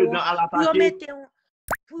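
A person talking for the first second or so, then a brief gap and a single short pop that sweeps quickly upward in pitch about a second and a half in.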